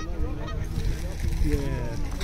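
Honking bird calls: several short honks in a row.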